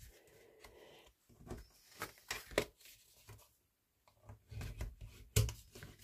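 Cardstock being folded and burnished flat with a bone folder on a tabletop: intermittent rustling and rubbing of the paper, with a brief quiet spell past the middle.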